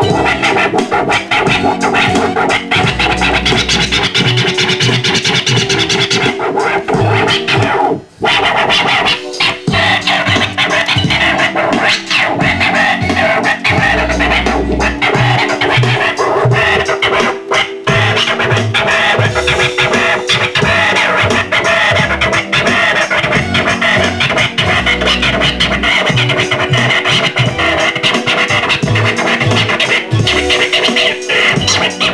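Turntablist scratching a vinyl record over a backing beat, the record pushed back and forth under the hand while the mixer fader chops the sound. The music cuts out for an instant about eight seconds in, and briefly again just past the middle.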